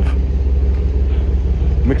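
A loud, steady low rumble with no distinct events, picked up on a phone microphone outdoors. A man's voice comes in near the end.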